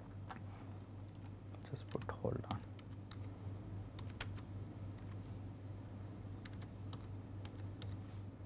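Sparse, irregular clicks of a computer keyboard and mouse over a low, steady hum.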